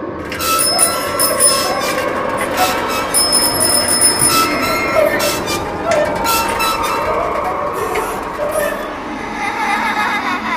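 Sound effect from a rusty tricycle Halloween prop: shrill metallic squealing and creaking, with a few steady bell-like high tones.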